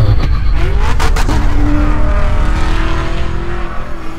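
Lamborghini Huracán's V10 engine revving over a deep rumble. It gives a quick run of sharp pops about a second in, then holds a long engine note that climbs slowly.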